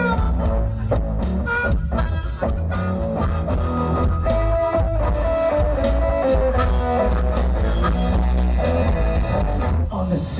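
Live blues band playing an instrumental passage: electric guitars and drum kit with harmonica, with held, wavering lead notes in the middle.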